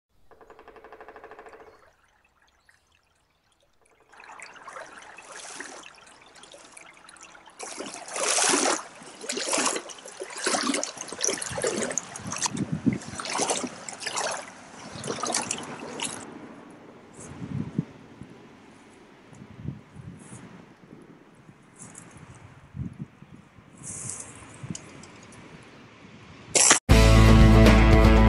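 River water splashing and trickling in uneven surges, busiest in the middle and thinning out towards the end, after a brief pitched tone at the very start.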